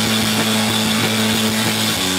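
A rock band playing live, loud: electric guitars hold one steady chord over drums.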